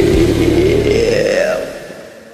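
A singer holds the last long note of a rock song over a karaoke backing track; the note dips and then rises in pitch. The backing track's low end stops about a second in, and the sound fades out near the end.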